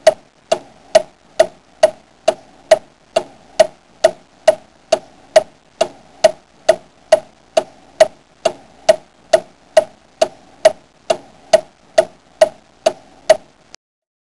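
Steady clock-like ticking, a little over two ticks a second, each tick with a short ringing note; it stops near the end.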